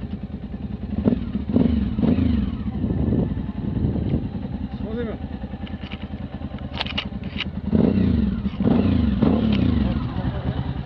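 Motorcycle engine running at idle, its throttle blipped several times in the first few seconds and revved longer near the end.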